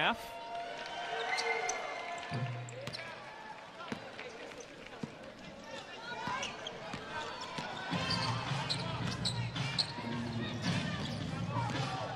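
Basketball game sounds on a hardwood court in a large arena: the ball bouncing, sneakers squeaking and players' voices calling out. A low steady hum comes in about eight seconds in.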